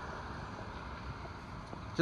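Road traffic noise: a car going by on the street, its tyre and engine noise slowly fading.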